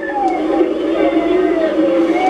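A man's voice at a microphone, slow and drawn out in a hesitation between phrases, without clear words.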